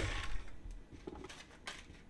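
Stand mixer switched off, its motor winding down as the flat beater slows to a stop in thick cake batter, followed by a few faint ticks and taps.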